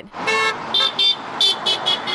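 Car horns honking at roadside sign-wavers, over traffic noise: one longer honk, then several quick beeps. The honks are passing drivers signalling support.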